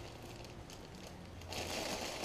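Clear plastic bag of small ceramic tiles crinkling as hands gather its open top and lift it, the crinkling starting about a second and a half in after quiet handling.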